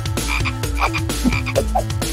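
Frog croaks, cartoon-style, repeating in a rhythm over a steady low pulsing beat, about four pulses a second, like a novelty croaking tune.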